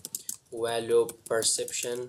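Computer keyboard typing, a quick run of key clicks as a short phrase is typed. A voice speaks over the second half of it.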